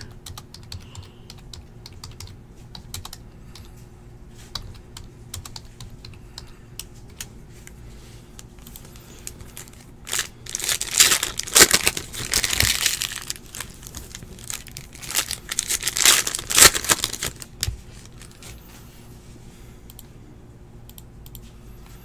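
A stack of glossy trading cards being flipped through by hand: a loud, dense run of snapping and rustling from about ten to seventeen seconds in. Faint scattered clicks come before and after it.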